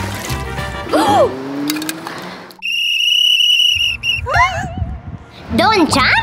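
A whistle blown once, a single shrill steady blast of about a second midway, as a lifeguard's warning. Cheerful background music plays throughout, and voices exclaim near the end.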